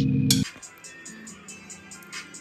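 Background music: a loud electronic track with deep bass cuts off suddenly about half a second in. A faint track with a quick, steady ticking beat follows.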